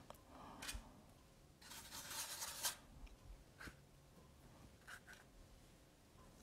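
Faint scratchy rubbing of a paintbrush stroking watercolour paper, the longest stroke about a second long around two seconds in, with a few softer brief touches.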